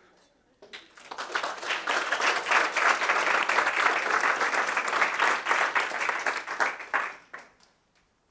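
Audience applauding, a dense patter of many hands clapping that starts about a second in, holds steady, and dies away about a second before the end.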